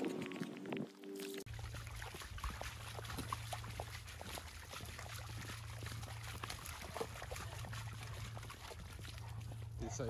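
A dog's paws splashing and padding through shallow puddles on a wet gravel lane: irregular small splashes and steps over a steady low rumble. A steady hum cuts off about a second and a half in.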